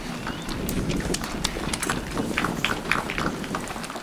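Audience applauding: scattered, irregular claps.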